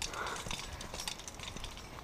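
Scattered light clicks and knocks over a soft rustling hiss, irregular, with no steady rhythm.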